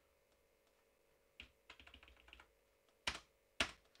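Computer keyboard typing: a quick run of light keystrokes deleting a word, then two louder, sharper key presses about half a second apart.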